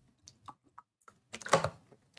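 Light clicking: a few faint scattered clicks, then a louder cluster of sharp clicks and knocks about one and a half seconds in.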